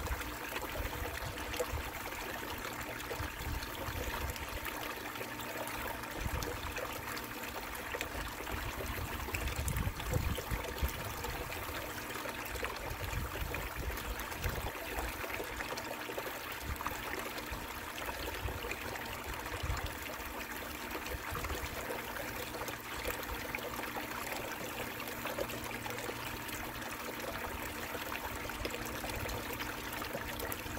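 Water running down an Angus Mackirk Mini Long Tom clean-up sluice and pouring steadily off its end into a bucket below, with a faint steady hum underneath.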